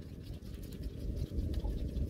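Soft rubbing and patting of a ball of bread dough being rounded under gloved hands on a floured stainless-steel worktop.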